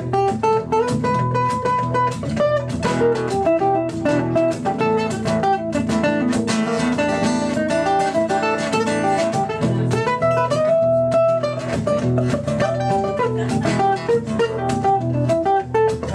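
An acoustic guitar solo: a lead acoustic guitar picks a fast melodic line over a second acoustic guitar strumming the chords.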